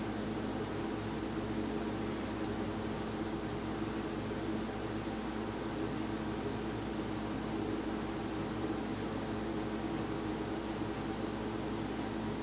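Steady background hum and hiss, unchanging, with no distinct events.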